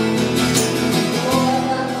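Live acoustic band music carried by a strummed acoustic guitar.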